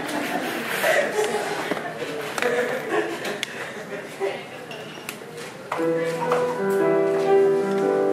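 Indistinct murmur of people talking, with a few clinks, then an upright piano starts playing sustained chords about two-thirds of the way through.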